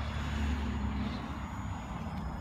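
Traxxas TRX-4 RC crawler's brushed electric motor and geared drivetrain whirring at low speed as it crawls over a wooden step. A faint hum rises slightly in pitch during the first second, over a steady low rumble.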